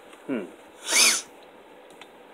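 A single short cat call about a second in, rising and then falling in pitch, from a house cat.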